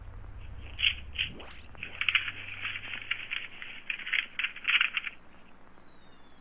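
Electronic sound effects: irregular, clipped chirps with a thin, telephone-like tone. A rising sweep comes about a second and a half in, and a low hum fades out about halfway through.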